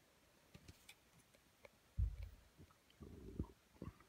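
Handling noise from fingers turning and pressing a hollow plastic light-up toy ball: faint scattered clicks and taps, a low thump about halfway through, and a short low rumble a second later.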